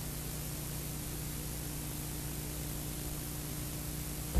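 Steady hiss with a low electrical hum underneath: the background noise of a blank video signal, with no programme sound on it.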